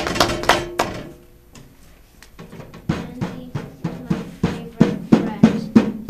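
A small hand-held drum being beaten by a child: a few strikes at first, a lull of about a second and a half, then a run of even beats at roughly three a second that gets louder toward the end.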